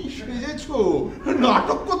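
A man chuckling, his laugh running into speech near the end.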